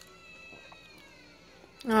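Faint television cartoon audio with thin gliding tones, then a woman's drawn-out "ah" starting near the end.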